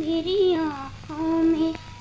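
A woman's high voice singing two short phrases of a Hindi film song, with a brief break a second in, over the faint steady hum of an old film soundtrack.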